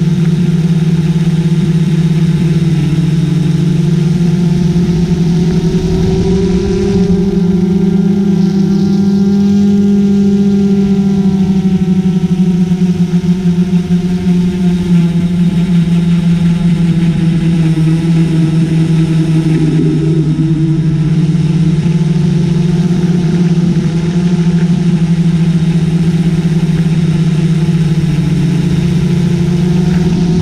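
Small multirotor drone's electric motors and propellers humming steadily, the pitch rising and dipping a little as the craft flies.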